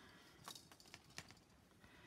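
Faint clicking and ticking of fine jewellery wire being wrapped by hand around a core wire, with a couple of sharper clicks about half a second and a little over a second in.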